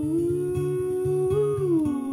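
A man's voice holds one long sung note without clear words over strummed acoustic guitar. About three-quarters of the way through, the note bends up briefly and then slides down to a lower note.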